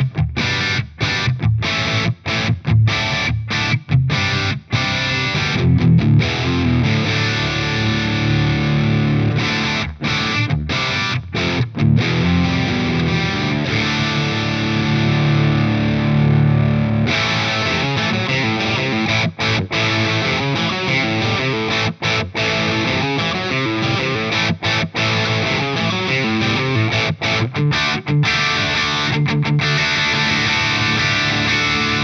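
High-gain distorted electric guitar: the bridge humbucker of a PRS CE24 played through a Synergy DRECT Mesa Dual Rectifier-style preamp in its orange mode. The riff starts with stop-start palm-muted chugs with short gaps, then moves to held chords. About 17 seconds in, the tone changes as a preamp control is turned, and the chugging riffs resume.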